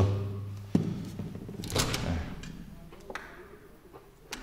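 A few knocks and clicks from a PVC window's handle and sash as it is opened: a sharp knock just under a second in, a louder clunk near the middle, then a light click.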